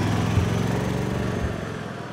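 Golf cart's small engine running as the cart drives off, slowly fading as it moves away, with a couple of brief low bumps.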